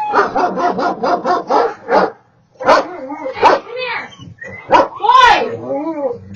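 Dogs barking at an intruder through a home security camera's microphone: a quick run of short barks about five a second, a brief pause, then several louder, longer barks.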